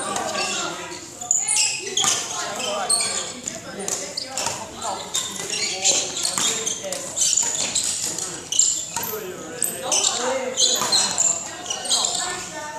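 Voices talking in a large echoing hall, with a badminton player's quick footsteps striking the court floor during shadow footwork.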